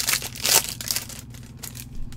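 Foil trading-card pack wrapper being torn open and crinkled by gloved hands, a run of crackling rips with the loudest about half a second in.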